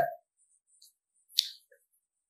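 A single short, sharp click about one and a half seconds in, after the tail of a man's speech.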